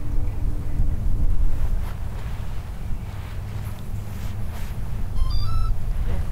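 Strong wind buffeting the microphone in an open field: a heavy, uneven low rumble that rises and falls with the gusts.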